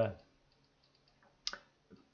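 A single short, sharp click about one and a half seconds in, followed by a much fainter tick just before the end.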